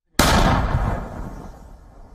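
An artillery gun firing a single round: a sudden loud blast just after the start, then a rumble that dies away over about a second and a half.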